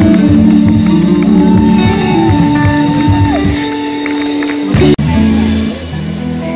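Live band of electric guitars, bass guitar and drum kit playing. The drum hits stop about three and a half seconds in, leaving a held chord, and the sound cuts off abruptly about five seconds in before going on quieter.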